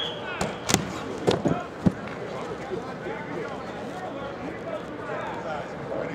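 About five sharp smacks in the first two seconds of a practice drill, over people talking in the background.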